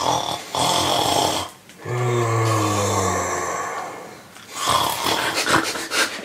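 A person's exaggerated, performed snoring: a rasping in-breath, then a longer low snore from about two seconds in, its pitch sinking slightly, and another rasping in-breath near the end.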